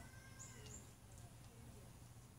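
Near silence: quiet outdoor air with a few faint, high bird chirps in the first second.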